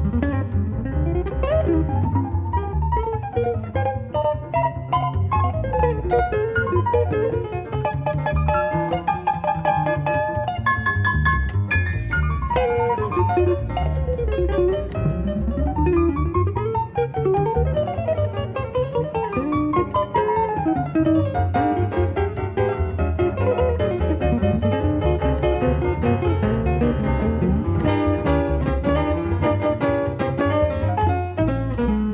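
Drumless jazz trio of piano, guitar and double bass playing a swing standard, the guitar to the fore in quick runs of notes rising and falling over the bass. A live recording played back from cassette tape.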